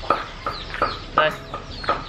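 Chickens clucking in a run of short calls, about three a second.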